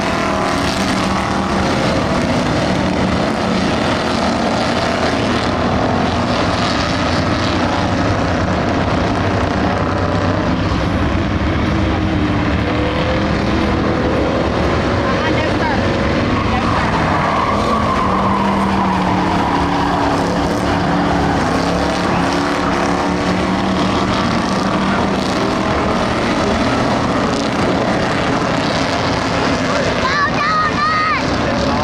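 A pack of Ford Crown Victoria race cars with V8 engines running laps on a dirt oval. Several engines sound at once, their pitch rising and falling as the cars accelerate and pass.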